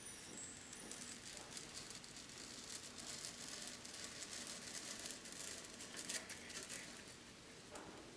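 Faint, irregular crackling and scraping as a block of polystyrene foam is pushed along a hot wire cutter's plate and through its heated Kanthal wire, which melts its way through the foam. The crackling is densest in the middle of the cut.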